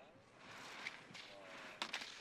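Faint scraping hiss of a monoski's edge carving on snow through slalom turns, with faint distant voices and a short click near the end.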